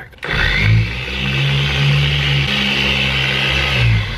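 Handheld electric car polisher switching on and spinning up, then running steadily as its foam pad buffs compound on a car's door panel.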